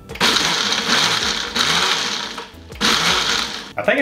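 Countertop blender pulsed three times, each run about a second long with short breaks between, blending an ice cream and carbonated-drink shake.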